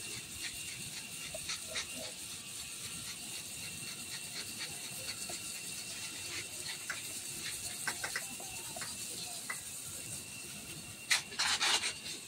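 Water spraying from a garden-hose spray nozzle onto trays of live sphagnum moss: a steady soft hiss with scattered light ticks of droplets. A louder rustling burst comes near the end.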